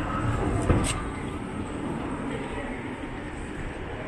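City street ambience: a steady low traffic rumble with people talking in the background, and one sharp knock just under a second in.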